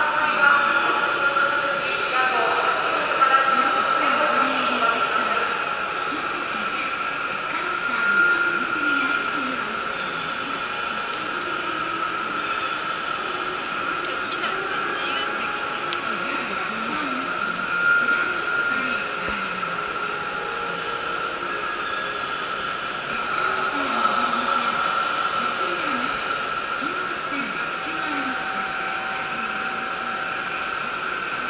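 Train station platform ambience: a steady high whine underneath, with people's voices and passing passengers at times.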